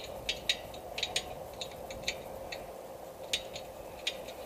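Irregular sharp metallic clicks and clinks, about a dozen, from a hand wrench working the bolts on an FM broadcast antenna's fittings. A faint steady hum runs underneath.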